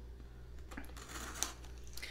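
Faint handling noises of a small cardboard box being picked up: light rustling with a single soft click about one and a half seconds in.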